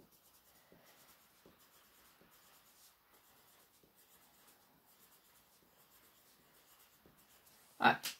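Light green coloured pencil scratching faintly on paper in short, irregular strokes as small swirls are shaded in.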